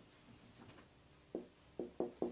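Marker pen writing on a whiteboard: faint scratching strokes, with two short soft sounds in the second half.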